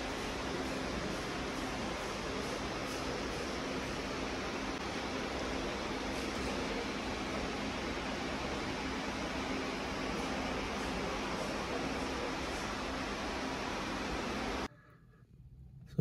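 Steady, even background noise of a large supermarket hall as a loaded shopping trolley is pushed through the aisles. It drops to near silence about a second before the end.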